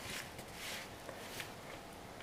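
Faint rustling of a cloth doll and its mohair yarn hair being handled, with a light tick about halfway through.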